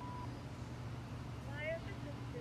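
A bobcat kitten giving one short, high, rising mew near the end, over a steady low hum.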